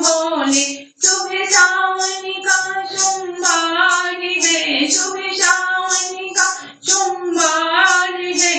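A high solo voice singing a devotional Shiva bhajan in folk style, with long held notes and short breath breaks about a second in and near seven seconds. A steady high percussion beat runs underneath at about two strokes a second.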